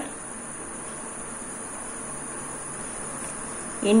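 A steady high-pitched background drone over a low, even hiss, unchanging throughout.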